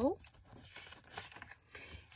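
Faint rustling and crinkling of a sheet of paper being creased along its fold and handled by hand.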